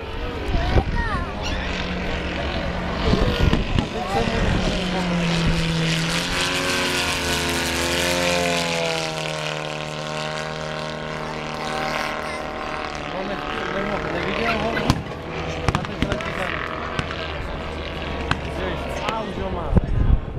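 Radio-controlled model airplane engine buzzing in flight, its pitch falling slowly about halfway through as the plane flies past, with people talking.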